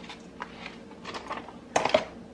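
Grated Parmesan cheese being shaken from a small plastic container over a stainless steel bowl of raw ground meat: a few light taps and clicks, then a sharper clack near the end.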